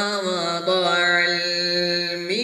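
A man reciting the Quran in the melodic tajweed style into a microphone, drawing out long ornamented notes that waver and glide in pitch.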